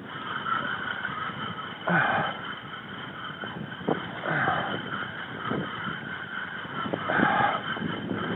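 Choppy waves slapping against a kayak hull, with wind on the microphone. It comes as a steady wash with louder surges about every two and a half seconds.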